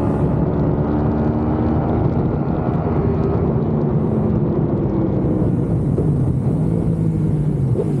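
Sport motorcycle engine running steadily at road speed, picked up by a camera mounted on the bike along with wind and road noise. Its pitch drops near the end as the bike eases off.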